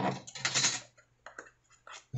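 Hands handling and turning a small tape-wrapped cardboard box: a scratchy rustle of fingers on taped cardboard in the first second, then a few light clicks and taps.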